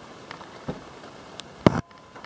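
Handling and movement noise from someone shifting about in an attic: faint rustling, a few light knocks, and one louder, deeper thump near the end.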